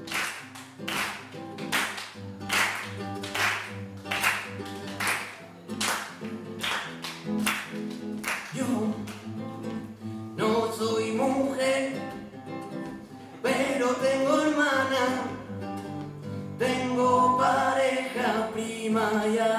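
Classical guitar strummed in a steady rhythm of chords, about two strokes a second. About ten seconds in, a man's voice starts singing over it.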